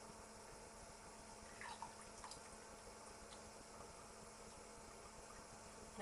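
Near silence, with a few faint drips of chicken roasting juices running from a tilted roasting tin into a saucepan about two seconds in.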